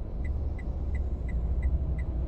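Low, steady rumble of a car waiting in traffic, heard from inside the cabin. Over it, the car's indicator relay ticks evenly about three times a second.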